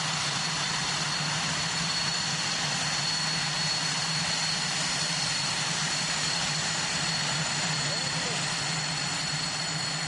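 The twin General Electric J85 turbojets of a Northrop F-5E Tiger II running on the ground: a steady rushing jet noise with two high, constant turbine whines on top.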